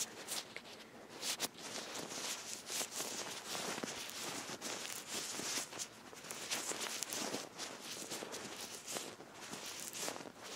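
Gloved hands rubbing close to the microphone, a continuous run of soft crackly friction strokes, as ointment is massaged onto the neck.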